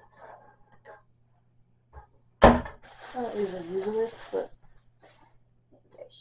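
A single sharp thump, followed by a breathy, wordless voice sound about a second and a half long whose pitch dips and then rises, with light handling clicks around them.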